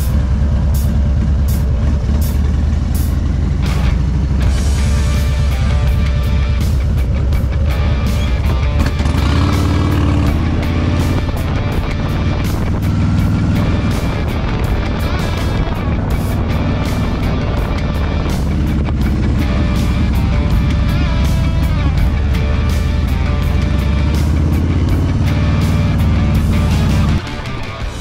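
2022 Harley-Davidson Low Rider ST's Milwaukee-Eight 117 V-twin running steadily on the move, with background music over it. Both cut off about a second before the end.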